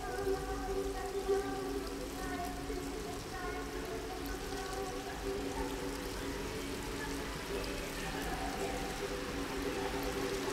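Soft ambient background music of held, overlapping tones that shift slowly, over a steady hiss of running water.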